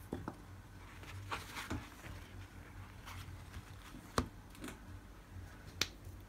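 Handling sounds on a tabletop: a few sharp clicks and brief rustles as a metal nail-stamping plate and tools are moved and set down. The loudest click comes about four seconds in, with another near the end.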